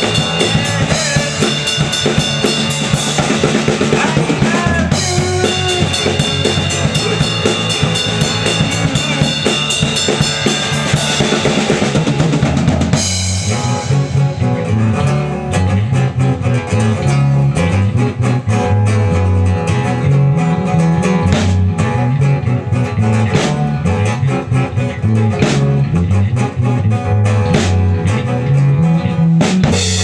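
Live band playing an instrumental passage on acoustic guitar, electric bass and drum kit. About halfway through the higher instruments drop away, leaving mostly a moving bass line over the drums.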